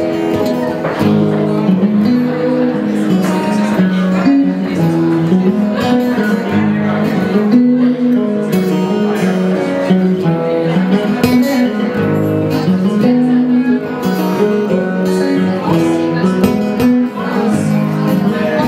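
Live acoustic guitar strummed with an electric guitar playing along: a continuous instrumental passage by a two-guitar duo.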